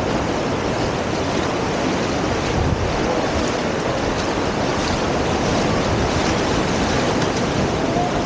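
Shallow surf washing over a sandy shore and around wading feet, a steady rushing wash, with wind buffeting the microphone.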